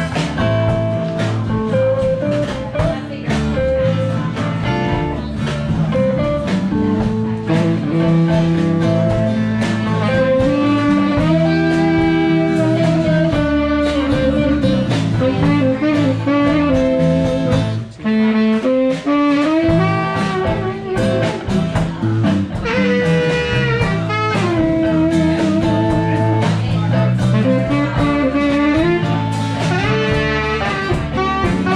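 Live blues band playing an instrumental: electric and acoustic guitars, bass and drums, with a saxophone. The band stops sharply for a moment about 18 seconds in, then comes back in.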